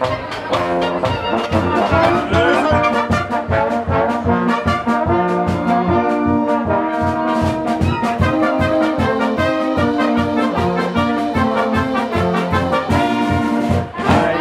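A Bavarian-style brass band (Blasmusik) playing live: tubas, trombones and clarinets holding full chords over a steady drum beat.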